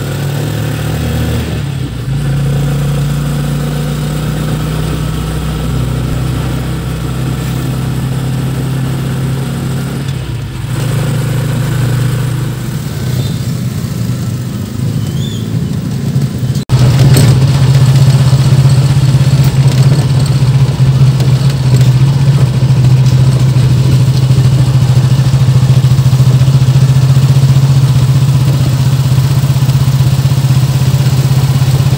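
Engine of a moving vehicle running steadily, heard from inside the vehicle as a low drone. About two-thirds of the way in there is an abrupt cut, after which the drone is louder.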